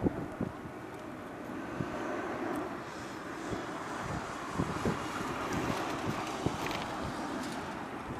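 Airbus A380 four-engined airliner passing overhead, its jet engines a steady rush that swells a little through the middle, with wind buffeting the microphone.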